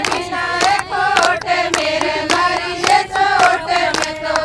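A group of women singing a Haryanvi folk song together in unison, with hand-clapping keeping time at about three claps a second.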